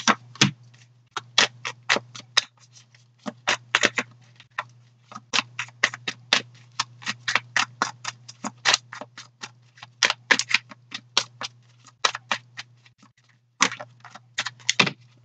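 Tarot deck being shuffled by hand, a quick run of card clicks several times a second, with short breaks about a second in, around four to five seconds in and near the end. A steady low hum runs underneath.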